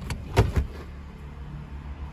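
Daewoo Lanos car engine idling with a steady low hum. There is one short, louder thump about half a second in.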